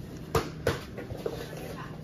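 Two sharp knocks about a third of a second apart, over a steady low hum.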